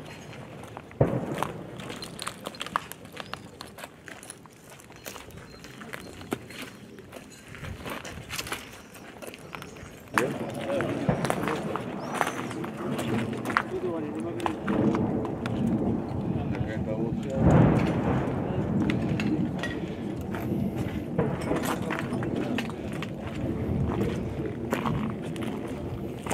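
Voices talking, heard from about ten seconds in, with a sharp bang about a second in and scattered short knocks and clicks throughout.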